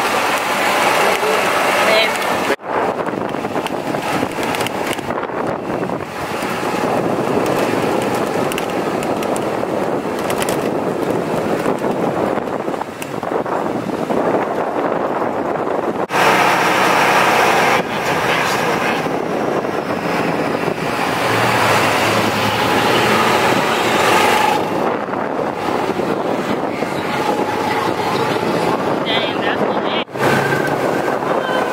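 Wind rushing over the microphone and road noise from a moving golf cart, with indistinct voices mixed in. The sound breaks off abruptly and changes twice, once early and once about halfway through.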